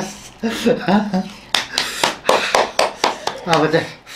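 Speech only: two people talking back and forth.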